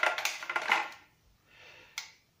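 Plastic clicking and rattling of a Geberit cistern flush valve being handled and turned over in the hand, busiest in the first second, then one sharp click near the end.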